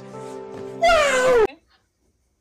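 A man's long, wailing cry of 'no' over a steady music bed. The cry rises and then falls in pitch, and both it and the music cut off abruptly about one and a half seconds in.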